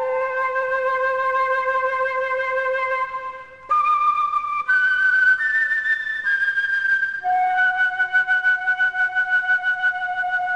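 Solo concert flute holding long sustained notes: a low note held for about three and a half seconds, then a run of shorter, higher notes. From about seven seconds in, a held note is articulated with a rapid, even pulse.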